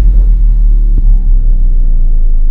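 Cinematic logo-reveal sound effect: a loud, deep bass rumble held steady after an impact, with a faint tick about a second in.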